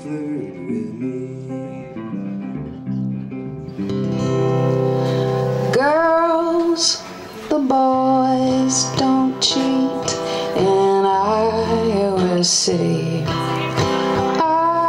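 Live acoustic guitar music: strummed acoustic guitar at first, then about four seconds in a female singer-guitarist's song takes over, her voice entering about two seconds later with sung lines over her acoustic guitar.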